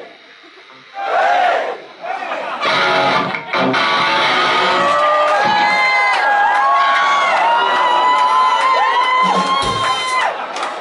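Live rock gig: the crowd cheers and shouts over the band's music. From about four seconds in, a long held melodic line steps and slides in pitch above the crowd noise.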